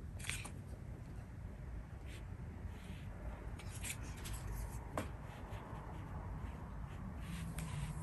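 Faint, scattered light rubs and taps as painting brushes are handled and stroked over paper, one sharper click about five seconds in, over a low steady hum.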